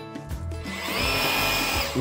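Cordless high-pressure washer's motor spinning up about half a second in, then running steadily with its water spray as the car is rinsed.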